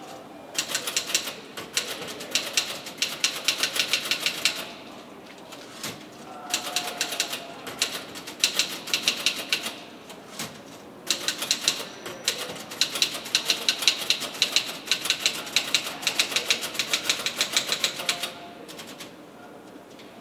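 Rapid typing on a keyboard in three long runs of quick key clicks, with short pauses about five and ten seconds in; the typing stops a little before the end.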